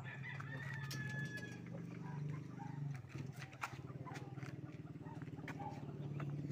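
One long animal call, held and falling slightly in pitch through the first second and a half, over a steady low hum and scattered short knocks.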